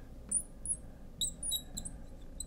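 Fluorescent marker squeaking on lightboard glass while writing: a string of short, high-pitched squeaks, one after another.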